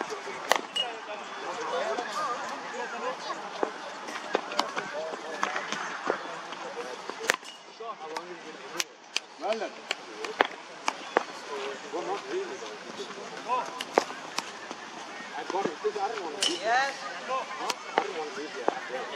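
Irregular sharp knocks of hard cricket balls at net practice, striking bats, the pitch and the netting a dozen or more times, over distant voices.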